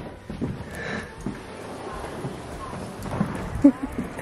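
Steady rushing noise of wind buffeting the microphone outdoors, with brief faint voice sounds about three seconds in.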